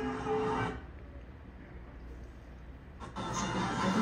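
Television sound: music cuts off under a second in, leaving about two seconds of faint low hum while the TV switches between videos, then the TV's sound comes back about three seconds in.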